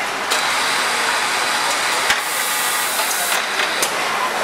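Steady machinery noise and hiss of a garment factory floor, with a few short sharp clicks.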